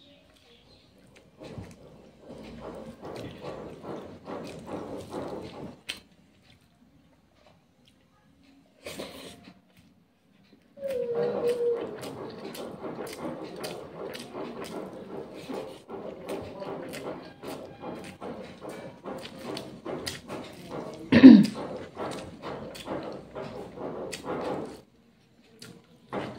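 Close-miked eating sounds of a person eating rice and curry by hand: fingers working the food on the plate, then chewing and mouth clicks in runs separated by short silent pauses. About 21 seconds in comes one brief loud call, the loudest sound in the stretch.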